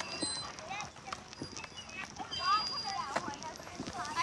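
Quiet outdoor ambience of distant voices, with scattered knocks and short high chirps, before any music starts.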